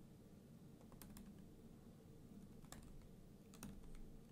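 A handful of faint, irregularly spaced keystrokes on a computer keyboard, typing a short command.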